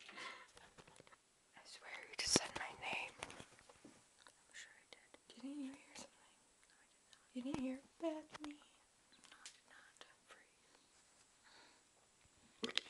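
A girl whispering close to the microphone in short breathy bursts, with a few brief voiced sounds and a sharp click about two seconds in.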